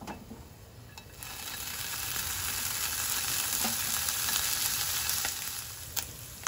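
Sliced bacon sizzling in a frying pan. The sizzle starts after a couple of light clicks, swells about a second in, then holds steady and eases off near the end.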